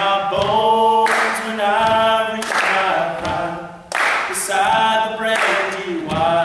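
Male a cappella group singing in close harmony, several voices holding chords for about a second at a time between short breathy breaks.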